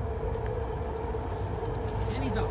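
A steady mechanical hum, one held tone over a continuous low rumble, with no change in pitch or level.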